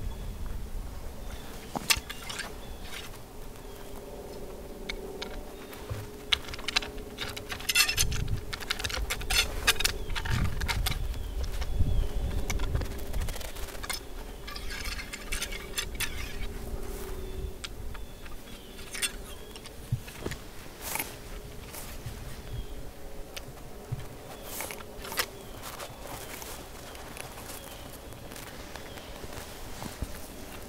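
Quiet handling noise: scattered clicks and rustling of clothing and gear, busiest in the middle stretch, with a faint steady hum underneath.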